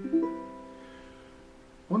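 Custom Lichty tenor ukulele with a sinker redwood top and Brazilian rosewood back and sides, strung for low G with wound G and C strings. One chord is played, its notes sounding just apart at the start, then left to ring and slowly die away.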